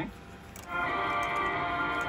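Music from a news radio: after a brief pause, a held, ringing chord comes in under a second in and carries on steadily.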